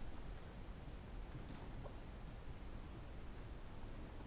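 Whiteboard marker drawing on a whiteboard: two long, faint, high-pitched strokes as it traces the curved lines of a diagram.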